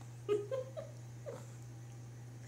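A baby making two or three short, high-pitched whimpers with rising pitch about half a second in, reacting to his first taste of pureed green beans; a faint steady low hum runs underneath.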